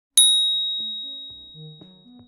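A single bright, high-pitched ding that rings on and slowly fades. Soft, low music notes begin under it about a third of the way in.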